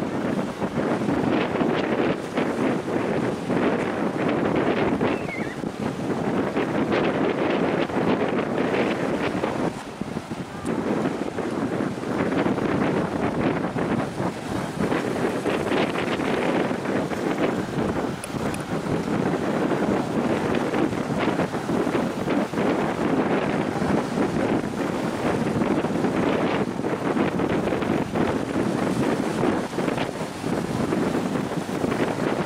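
Wind blowing across the camera microphone: a steady rushing noise that dips briefly about a third of the way in.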